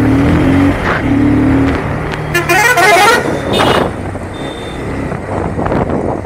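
Busy street traffic: vehicle engines running, with a horn sounding twice in the first two seconds and a louder horn blaring briefly about two and a half seconds in.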